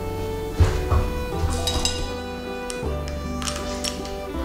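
Background music with sustained notes. Over it come several light clinks of a spoon and crockery: single strikes about half a second and a second in, then small clusters a little before the middle and near the end.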